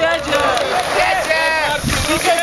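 Several spectators' voices calling out and talking over one another, shouting encouragement to the riders.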